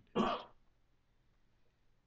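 One short sound from a man's voice just after the start, then a pause of faint room tone.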